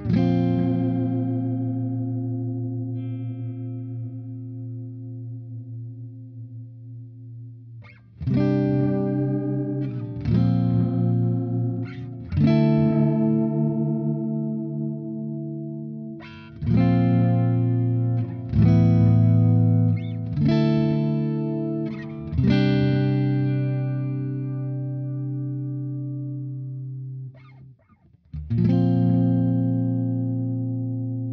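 Electric guitar chords played through an MXR Carbon Copy Deluxe analog delay pedal with its modulation switched on. Each chord is struck and left to ring out: the first fades over several seconds, then chords follow every second or two, and the sound drops away briefly just before a last chord near the end.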